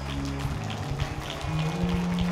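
A congregation clapping their hands, a dense, uneven patter of many claps, over held chords of background music that shift to a new chord about halfway through.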